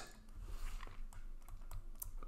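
Faint, irregular clicks and light taps of a stylus on a pen tablet while a number is handwritten.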